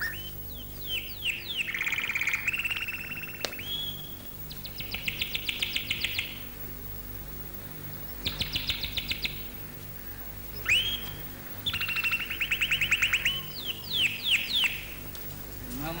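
Small songbirds singing: about five phrases of rapid trilled notes and quick downward-sliding whistles, with short gaps between them, over a faint steady hum.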